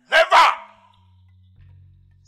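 A man shouting "never!" as two loud syllables in the first half second, over low sustained background music tones that carry on afterwards.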